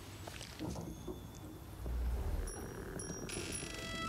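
Film soundtrack of an animated short: faint small rustles and clicks, a short low rumble about two seconds in, then sustained high bell-like music notes entering near the end.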